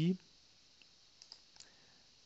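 A few faint computer mouse clicks, spread over about a second, against quiet room tone.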